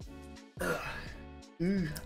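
A man's short, throaty "ugh" of hesitation, close to a throat-clearing grunt, starting about half a second in and falling in pitch, over quiet background music.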